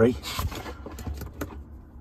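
A few light clicks and rattles of battery tester leads and their metal clips being handled, over a low steady hum.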